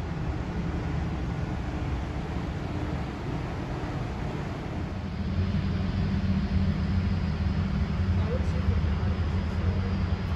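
A steady low mechanical hum that gets louder about five seconds in.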